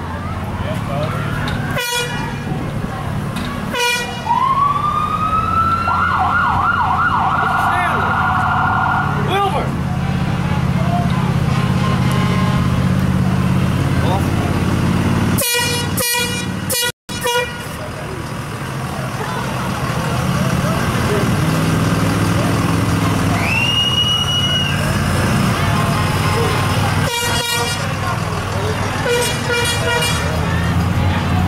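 Parade vehicles rolling past with a steady engine hum. About four seconds in, a siren winds up and warbles for several seconds. Short horn toots sound at several points, and a longer horn blast comes about two-thirds of the way through.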